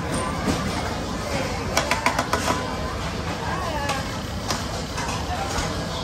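Busy restaurant background of voices and music, with a quick cluster of metal utensil clinks about two seconds in and a few single clicks later.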